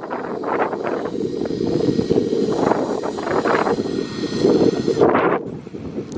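Wind buffeting the microphone: a loud, continuous low rumble with irregular gusts flaring up every second or so.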